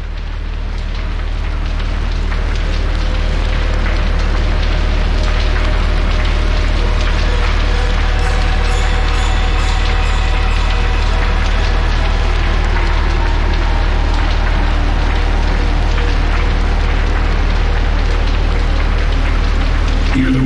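Ambient music intro: a deep steady drone under a dense crackling, rain-like noise, swelling up over the first few seconds. Faint sustained higher tones come in from about eight seconds in.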